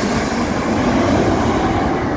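Twin-engine jet airliner low overhead on landing approach: loud, steady engine noise.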